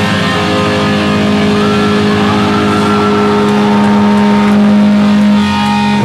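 Heavy metal band playing live: distorted electric guitars hold one long, steady chord, with a higher note sliding upward about two seconds in. The held chord breaks off about five and a half seconds in as the band moves on.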